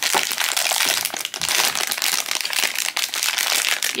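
A blind-box foil pouch crinkling steadily in the hands as it is opened and the figure is pulled out.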